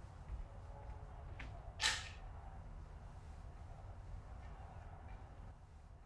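A single sharp click or knock about two seconds in, just after a fainter one, over a low steady rumble of room tone.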